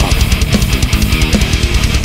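Death metal song in an instrumental stretch: heavily distorted electric guitars over fast, evenly driven drumming, with no vocals.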